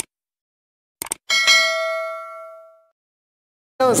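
Subscribe-button animation sound effect: a click, a quick double click about a second later, then a bell ding that rings and fades over about a second and a half.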